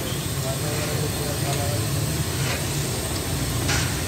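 Busy street tea-stall ambience: a steady low rumble under faint background voices, with a short clatter about three and a half seconds in.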